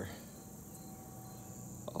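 Faint, steady, high-pitched insect chirring.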